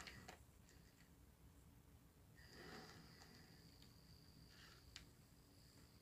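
Near silence, with a faint high-pitched whine from the Hornby Drummond Class 700 model locomotive's motor as it crawls along the track at its slowest speed, from about two and a half seconds in to about five seconds, and one light click near the end.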